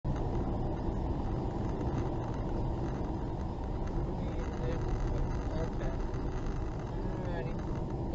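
Steady, muffled road rumble of a car driving along a highway, heard from inside the cabin: tyres and engine. Faint voice-like sounds come in over it in the second half.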